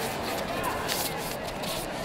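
Sports-hall ambience: indistinct voices of coaches and spectators echoing in the hall, with a few short taps during a kickboxing bout on the mat.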